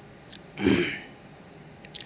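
A man clears his throat once, a short burst about half a second in.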